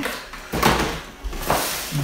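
Cardboard packaging being handled: an insert pulled from a retail box and the box set down on a table, giving two dull knocks about a second apart.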